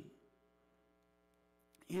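Faint, steady electrical mains hum, a stack of even unchanging tones, in a pause in a man's speech. His voice trails off at the start and comes back near the end.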